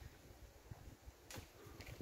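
Near silence: faint outdoor background with a low rumble and a couple of faint, brief ticks.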